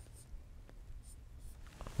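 Faint scratching and light taps of a stylus writing on a touchscreen, over a low steady room hum.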